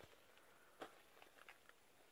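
Near silence with a few faint, scattered clicks, the clearest just under a second in.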